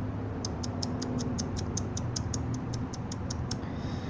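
Rapid, even, high-pitched ticking, about six ticks a second, starting about half a second in and stopping shortly before the end, over a low steady background rumble.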